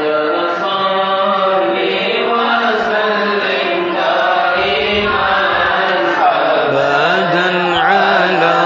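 Men chanting Arabic mawlid verses in praise of the Prophet into a microphone, in slow melodic lines that are held long and bent in pitch.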